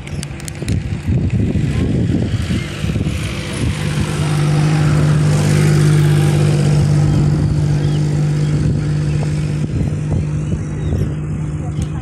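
A motor engine running steadily with a low hum, growing louder about four seconds in and holding there for several seconds.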